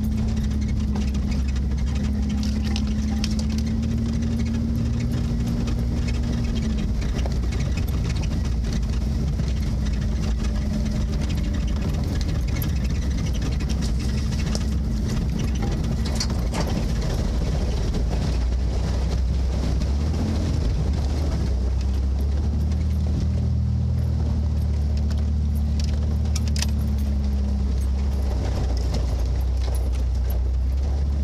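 Off-road 4x4's engine running at low speed, heard from inside the cab as it crawls over rough ground, with scattered rattles and clicks. The engine's drone eases off about seven seconds in and comes back up toward the end.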